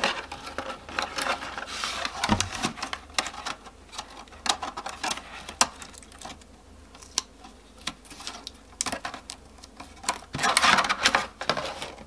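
Handling of a cut plastic milk bottle and masking tape: thin plastic being flexed and pressed while strips of tape are stuck on. Irregular crinkles and clicks, with a longer noisy burst near the end.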